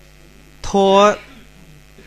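Steady electrical mains hum, with one held word from a voice about half a second in.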